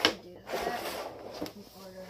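A stickhandling training frame being handled and pulled out along a tiled floor: a sharp knock at the start, then scraping and rattling as it is extended.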